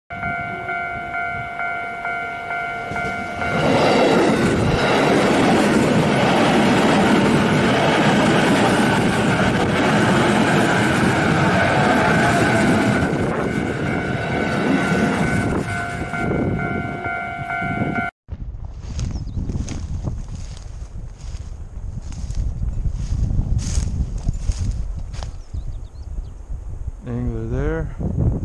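Railway level-crossing warning bell ringing steadily as an electric commuter train approaches, then the loud rumble and clatter of the train passing over the crossing, with the bell still ringing as it goes. After a cut about 18 seconds in, wind buffets the microphone in irregular gusts.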